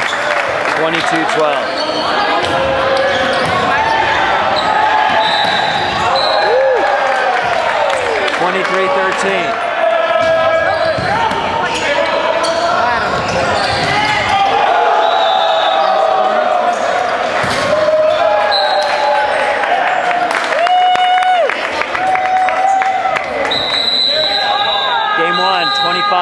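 Volleyball rally in a gymnasium: players shouting and calling to each other over crowd voices, with sharp hits and bounces of the ball.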